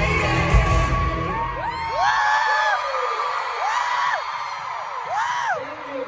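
Live pop music over an arena sound system, its heavy bass cutting out about a second and a half in. Then an audience of fans screams and cheers, with several single high screams that rise and fall in pitch.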